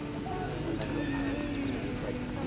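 A horse whinnying, faint, with the voices of people close by.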